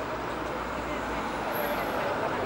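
Outdoor city ambience: a low traffic rumble under the murmured, indistinct chatter of a group of people walking.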